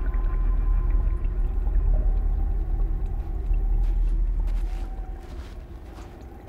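A deep, steady low rumble with faint wavering tones above it, fading down near the end.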